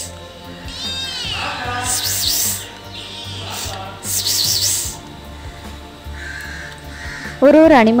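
A crow cawing several times, with harsh calls about a second apart, over a low steady background. A loud voice comes in near the end.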